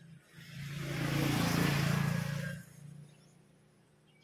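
A motor vehicle passing by: its engine and road noise swell up, peak around the middle and fade away over about two and a half seconds.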